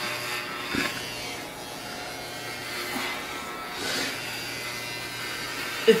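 Electric hair clippers buzzing steadily as they are pushed through very thick hair, pulling and ripping it out rather than cutting cleanly.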